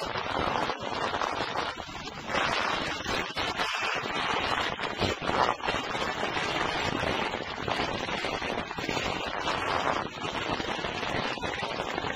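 A 1972 Yugoslav folk duet record playing: voices and band blurred in a dense, hissy transfer with no clear melody lines standing out.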